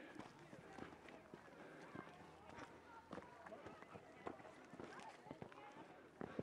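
Near silence: faint outdoor ambience with faint distant voices and a few small clicks and knocks.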